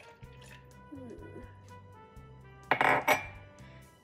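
Milk poured from a ceramic mug into a plastic blender jar of mango pieces, with a loud clink of dishware nearly three seconds in. Background music with low sustained notes plays underneath.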